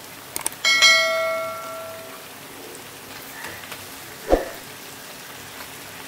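Subscribe-button sound effect: a couple of mouse clicks, then a bell chime that rings and fades over about a second and a half. A single dull thump follows about four seconds in.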